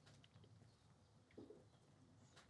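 Near silence: quiet outdoor ambience in a pause between speech, with one faint brief sound about one and a half seconds in.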